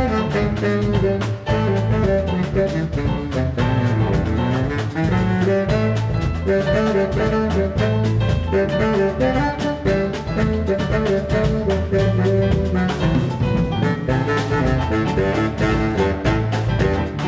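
Live jazz band playing a samba arrangement: saxophones with piano, bass guitar and drum kit, the baritone saxophone playing up front. The music runs steadily at full volume with a regular drum beat.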